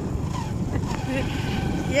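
Steady rumble of a moving motorbike ride: the engine and wind buffeting the microphone, with faint voices in it.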